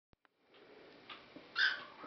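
A dog gives one short, high-pitched bark about one and a half seconds in, over faint room noise.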